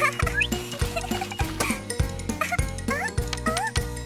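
Bouncy cartoon background music with a steady bass pulse, with short, high, squeaky sliding sounds popping in several times over it.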